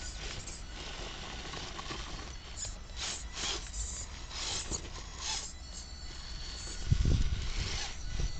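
Axial XR10 radio-controlled rock crawler working its way over boulders: short bursts of scraping and grinding as its knobby tyres and chassis work against the rock. A brief thin high whine comes about five and a half seconds in, and a louder low rumble near the end.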